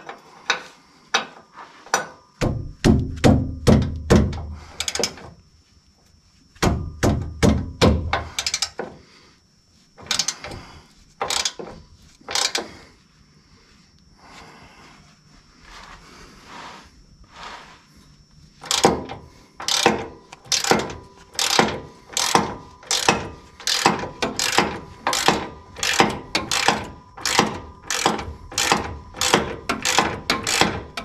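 Hand wrench working a suspension bolt loose on the truck's front end: metal clicking and clinking, with two spells of heavier knocking a few seconds in. About two-thirds of the way in comes a steady run of ratchet-like clicks, about two a second.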